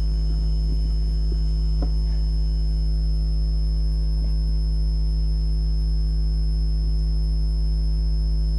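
Steady electrical mains hum from the sound system, with a thin high tone running above it and no other sound standing out.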